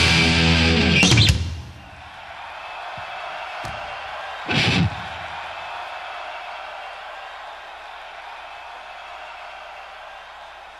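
A thrash metal band playing live, with distorted guitars and drums, ends a song about a second in. Steady crowd noise follows, with one loud shout about four and a half seconds in.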